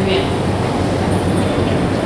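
Steady background rumble of the room with a constant low electrical hum, following a short spoken "Muy bien" at the very start.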